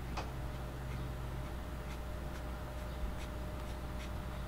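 Fine-tipped ink pen making a series of quick, light strokes on paper, over a low steady hum.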